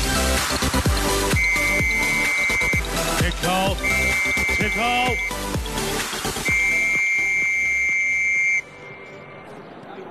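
Electronic music with a heavy bass beat and repeated long, high held tones, cutting off suddenly near the end to a much quieter background.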